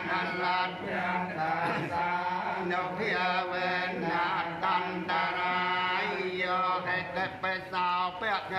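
Buddhist chanting by a group of voices in unison: long held notes that slide between pitches, with short breaks between phrases.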